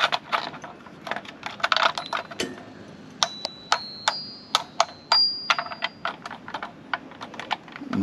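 Plastic push buttons on a ladybug-shaped baby toy pressed over and over, a quick irregular run of clicks. Short high electronic beeps sound between the clicks in the middle of the run.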